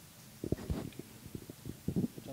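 Microphone handling noise: irregular low thumps and rubbing as the microphone is fitted onto a person's clothing.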